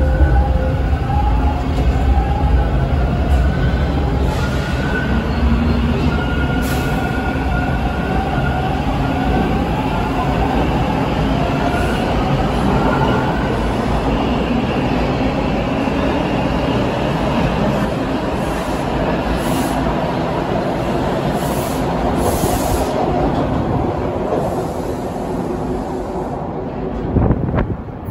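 Bombardier T1 subway train pulling out of the station. Its motors give a whine of several tones that step up in pitch as it accelerates over the first dozen seconds or so. The rumble of wheels on rail then carries on as the cars pass and fades near the end.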